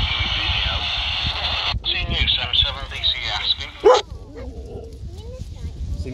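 Handheld VHF FM radio's speaker hissing with open squelch noise, then a distant station's voice coming through thin and band-limited, ended by a short squelch burst about four seconds in.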